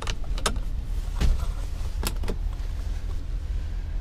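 A few sharp clicks, about five within the first two and a half seconds, as the van's interior light switches are pressed, over a steady low rumble.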